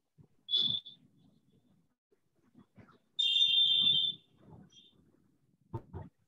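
A high-pitched steady tone sounds twice: once briefly about half a second in, then longer for about a second near the middle, with a short blip after it.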